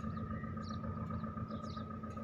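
Steady low rumble of distant road and port traffic with a constant hum, and a few faint bird chirps.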